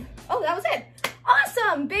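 A woman's voice speaking, with one short sharp knock about halfway through, over a low steady hum.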